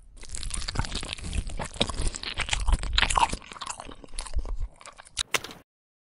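A dense, crackling crunching sound effect, many small crackles close together, that starts suddenly and cuts off abruptly after about five and a half seconds.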